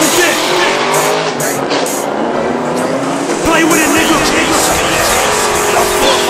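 Chevrolet Camaro engine revving and its rear tires squealing in a burnout, mixed with music and a voice.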